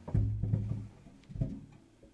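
Acoustic guitars bumped while being handled: a knock on a guitar body sets the open strings ringing low for about a second, then a second knock about one and a half seconds in rings briefly before dying away.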